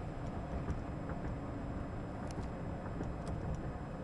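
Cab noise of a 2004 Chevrolet Silverado on the move: a steady low rumble from its 5.3-litre Vortec V8 and the road, with a few faint ticks.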